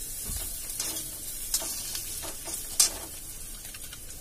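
Oil sizzling steadily in a wok on a gas stove while a spoon stirs a mustard paste in a small bowl, the spoon clicking against the bowl a few times, most sharply near the end.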